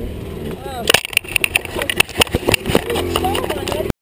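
A string of sharp, irregular knocks and clatters starting about a second in, from a fallen dirt bike being handled. Short bits of a voice or grunting are mixed in.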